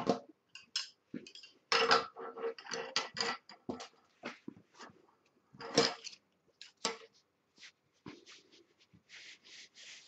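Handling noise from wooden weaving sticks and wool: irregular clicks and knocks as the sticks tap together and against the table, with brief rustles of the yarn and hands brushing over it.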